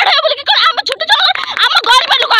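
A young woman speaking fast and loud in an agitated, raised voice, with other young women's voices overlapping hers from about halfway through.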